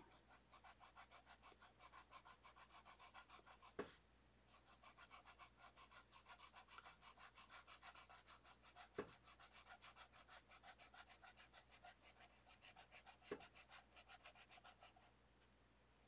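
Felt-tip marker scratching on paper in quick, faint, repeated strokes as lines are coloured in, with three soft taps spread through it.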